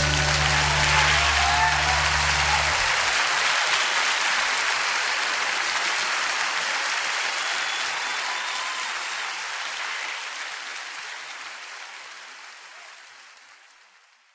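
Audience applauding at the end of a live song, with the last low note still ringing under it for about the first three seconds. The applause fades out gradually to nothing.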